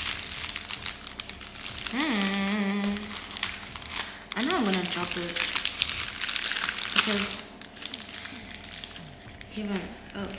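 Brown paper food wrapping crinkling and rustling as hands unfold it. Two short wordless vocal sounds come about two and four and a half seconds in.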